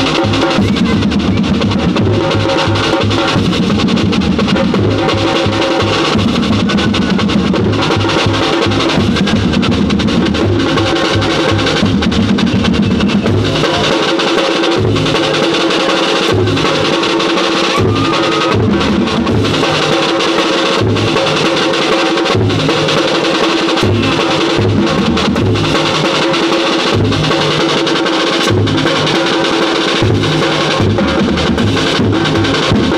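A street drum ensemble playing a steady, loud beat on snare drums, large bass drums and a cymbal.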